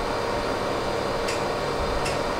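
Steady pink-noise test signal from Smaart's noise generator, an even, unchanging hiss used to measure the speaker's response.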